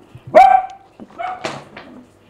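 A dog barking: one loud bark about half a second in, followed by a few shorter, softer ones.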